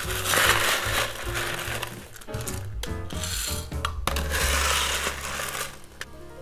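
Crushed ice scooped from a bin and poured into a highball glass, a grainy crunching rattle in several scoops, over background music.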